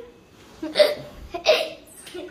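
A child's two short, breathy laughing gasps, about two-thirds of a second apart.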